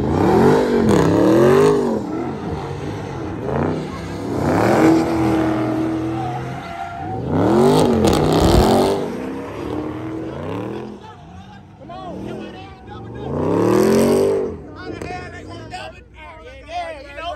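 Car engines revving hard during donuts, the pitch sweeping up and falling back in repeated surges, loudest at the start and again around the middle and near the end, with tyres spinning on the asphalt.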